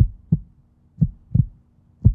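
A heartbeat sound effect: pairs of short low thumps, the second close behind the first, about one pair a second, over a faint steady low tone.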